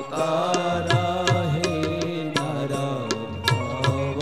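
A man singing a devotional melody into a microphone, his voice gliding between held notes, over steady lower accompaniment and sharp percussion strikes.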